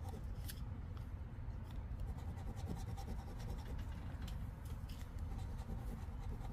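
A coin-shaped scratcher rubbed across a scratch-off lottery ticket, scraping off the latex coating in short, irregular strokes. A steady low rumble sits underneath.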